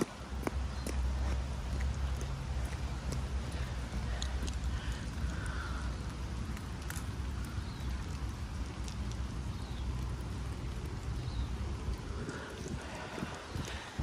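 Low rumble of wind buffeting a phone's microphone outdoors in the rain, with scattered faint ticks; the rumble eases near the end.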